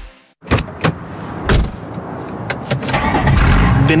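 Car sound effects in a radio advert: after a brief silence, a few sharp knocks, then a car engine running, louder from about three seconds in.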